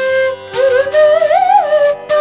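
Chitravenu sliding flute playing a short melodic phrase: a held note, a brief break, then notes that slide up and down with a wavering pitch, cut apart by tonguing, with a steady lower tone underneath.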